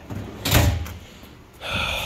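Steel drawer of a Snap-on roll cart slid shut by hand, one short sliding rush ending about a second in.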